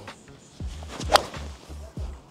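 A golf iron striking a ball off grass turf: one sharp, crisp strike about a second in, a well-struck shot. Background music plays quietly underneath.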